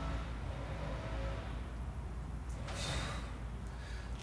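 A man's short, forceful breath about three seconds in as he presses a pair of dumbbells up, over a steady low background hum.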